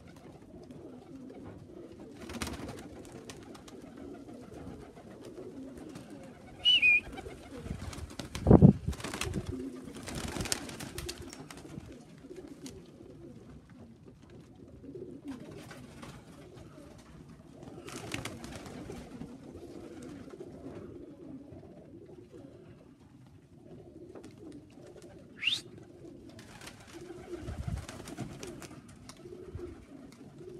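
Tippler pigeons cooing steadily, with bursts of wing-flapping as birds fly in and land on the loft. A thump about nine seconds in is the loudest sound. Two short high whistles come about seven seconds in and near the end.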